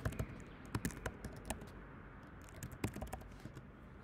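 Typing on a computer keyboard: irregular keystroke clicks, several in quick runs, as a word is keyed into a search box.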